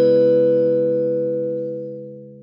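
Logo jingle: a held musical chord, sounded just before, fading slowly.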